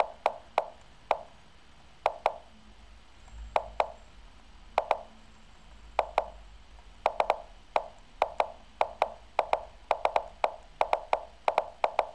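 Lichess online chess move sounds: a rapid, irregular run of short wooden clicks, about two to three a second, as moves are traded quickly in a blitz time scramble.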